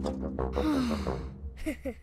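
Background cartoon music with a character's sigh a little after the start, then a few short rising vocal sounds near the end.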